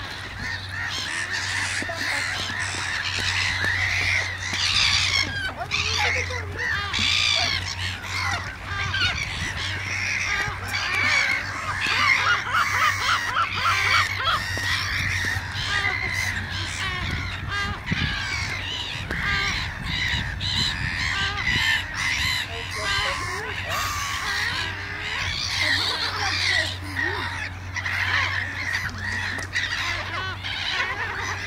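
A flock of lesser black-backed gulls calling over one another, many overlapping calls, as they fight over food thrown to them.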